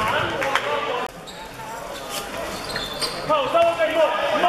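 A basketball bouncing on a hardwood court in a large hall, a few sharp bounces in the first second, then players' shouts from about three seconds in.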